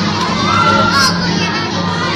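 A crowd shouting and cheering, many voices overlapping at once.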